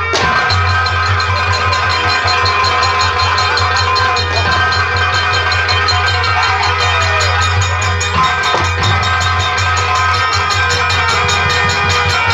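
Nautanki stage music: fast, steady drumming on a nagada kettle drum and a dholak, with held tones from a melody instrument over it.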